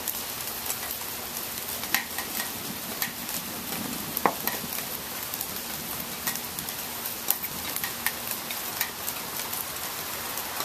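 Steady rain falling and dripping, an even hiss scattered with small patters of drops. A single knock comes about four seconds in.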